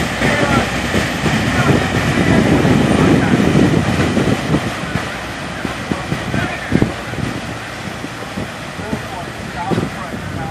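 Fireboat's engines running and its wake churning as it pulls away. The rumble is loudest about three seconds in, then fades as the boat draws off, with wind on the microphone.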